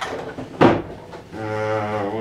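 A loud clunk about half a second in as metal is handled, then a low, steady hummed tone from a man's voice starting about a second and a half in.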